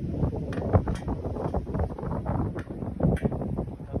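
Wind rumbling on the microphone, with a few light clicks from hands working the bolts at the hub of a steel wheel rim.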